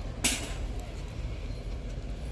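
Steady low rumble of store background noise, with one brief knock about a quarter second in.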